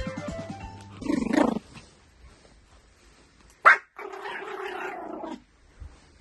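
A small dog, a Pomeranian, calls out twice. There is a short rough call about a second in. Then, after a sharp click, comes a long drawn-out whine. Guitar music fades out at the start.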